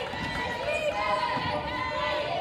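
Players' voices calling out during wheelchair basketball play on a hardwood gym court, over the rolling of sport wheelchairs and a few low thuds.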